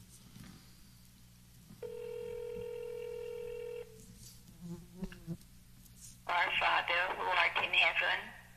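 Telephone ringback tone: one steady ring of about two seconds as a call is placed. The call then connects and a voice comes on the line about six seconds in.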